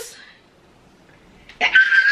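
A woman's voice trails off into a short pause, then about a second and a half in she lets out a long, high-pitched excited squeal.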